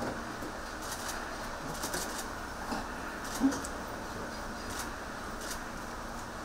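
Steady room hiss with a few faint clicks and one brief low sound about three and a half seconds in.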